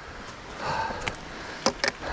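Footsteps and trekking-pole tips on a rocky, leaf-covered trail, with four sharp clicks of the poles striking rock in the second half.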